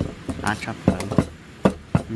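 Wooden pestle and metal spoon working a soft mash of grilled eggplant and chilies in a ceramic bowl: about six sharp knocks, irregularly spaced, as the pestle strikes and the spoon knocks against the bowl.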